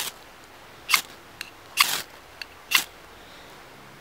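Square 90-degree spine of a carbon-steel TLIM C578 knife scraped down a ferrocerium fire rod, striking sparks: four short rasping strokes about a second apart.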